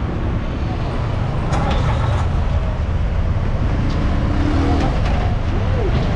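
Steady engine and road rumble heard from a vehicle moving through city traffic, with faint voices partway through.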